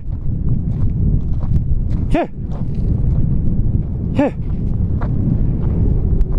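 A man's two short shouts of "hey", about two and four seconds in, shooing a dog away, over a steady low rumble on the microphone.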